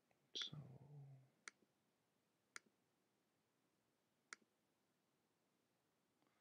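Faint computer mouse clicks: a click with a brief low vocal murmur near the start, then three single sharp clicks spaced one to two seconds apart.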